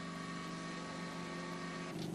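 A motor running with a steady, even hum, typical of a mortar spray machine at work on a building site.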